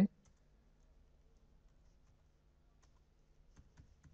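A few faint computer-keyboard keystrokes clicking near the end, after a stretch of near silence.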